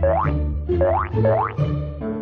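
Cartoon boing sound effects, three in quick succession, each a short rising twang, over music with a low, steady bass line.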